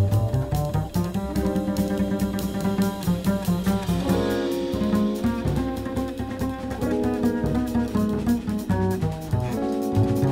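A small jazz group playing: sustained melody notes that shift every second or two over a bass line.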